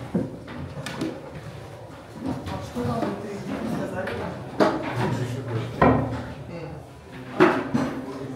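People talking around a crowded indoor corridor, with a few short, sharp knocks about halfway through and near the end.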